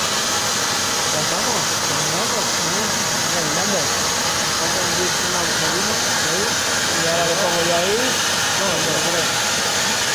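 Plasma torch of an Apmekanic SP1530 Maxcut CNC plasma cutting table cutting through metal plate: a steady, even hiss of the arc and its gas jet.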